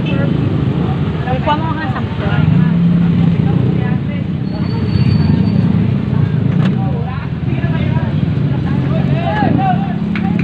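Busy street noise: a motor vehicle engine running close by, a steady low rumble, with people talking in the background.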